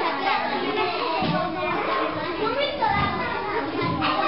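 Young children chattering and calling out over one another in a classroom, a continuous babble of kids' voices.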